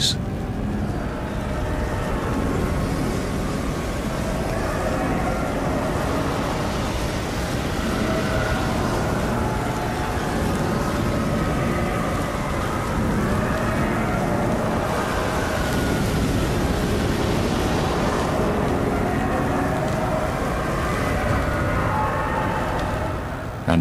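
Steady roar of a large blazing fire, a sound effect for the flames of Hades, holding at an even level without a break.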